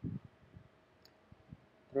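A few faint computer mouse clicks, single short ticks spaced about half a second apart, over a quiet room.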